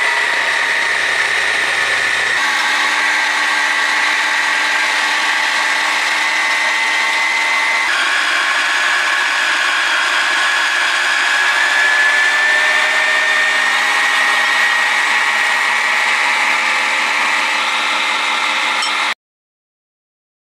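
Yonanas frozen treat maker's electric motor running as frozen fruit is pushed through it and comes out as soft-serve. The whine is steady and shifts a little in pitch as it goes, then cuts off suddenly near the end.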